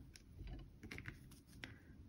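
A few faint, scattered clicks and taps as scissors and a crochet hook are handled and set down on the work surface after the yarn is cut.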